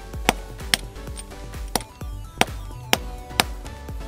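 Short-handled sledgehammer striking a steel bolt set in a socket, steel on steel, about six sharp blows roughly half a second apart. The bolt is being driven in to knock a removed wheel lock nut out of the socket, and the lock nut is stuck tight.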